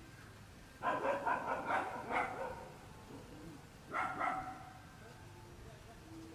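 An animal calling: a quick run of short pitched calls lasting about a second and a half, then two more short calls about four seconds in.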